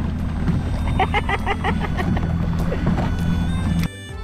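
Small fishing boat running underway: a steady low motor drone with water splashing and rushing along the hull. A person laughs in the middle, and music starts suddenly just before the end.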